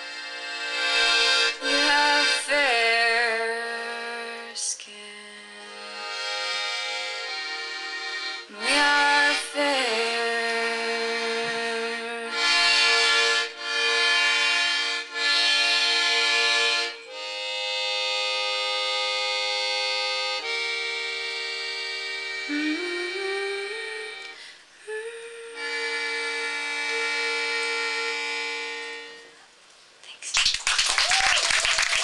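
Button accordion playing a slow tune in sustained chords, each held for a second or two with short breaks between, fading out as the tune ends near the end.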